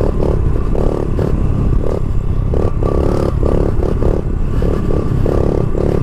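Honda CRF70 pit bike's small single-cylinder four-stroke engine revving in short, repeated bursts as the throttle is blipped on and off during a wheelie, over a steady low rumble of wind and road noise on the mic.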